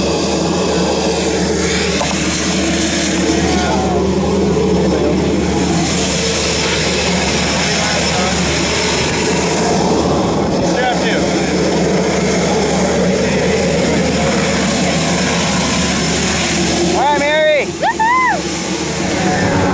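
Single-engine propeller plane's piston engine running steadily on the ground, a constant drone. Snatches of voices come over it, with a short, excited vocal burst such as a laugh near the end.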